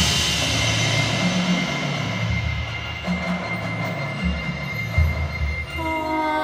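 Percussion ensemble music: low drum or timpani strikes under a sustained noisy wash and a held ringing high tone that slowly fades, with the music quieter in the middle.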